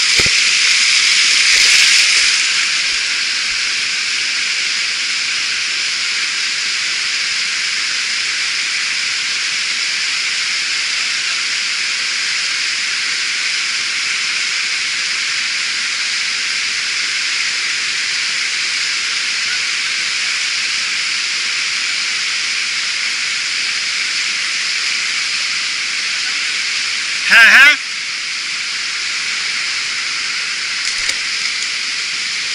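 Fast stream water rushing over rocks, a steady hiss, with a short loud burst near the end.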